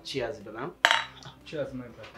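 A sharp clink of a glass beer bottle about a second in, among short vocal sounds.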